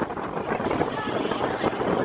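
Steel mine-train roller coaster running along its track: a steady rumble of wheels on rails mixed with wind on the microphone.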